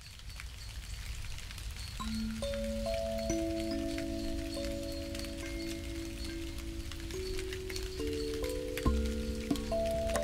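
Intro music: a rain-like patter fades in, and from about two seconds in soft sustained notes enter one after another, building into a held chord.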